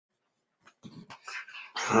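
A few faint short noises, then near the end a man's voice starts loudly on the word "hallelujah".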